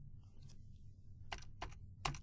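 A few faint computer keyboard key presses, three quick clicks in the second half, over a low steady hum.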